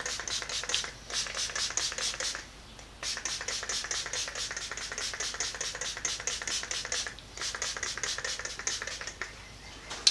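Trigger spray bottle of Boeshield RustFree squirted rapidly onto a cast iron bandsaw table: several short hissing squirts a second, in four runs separated by brief pauses.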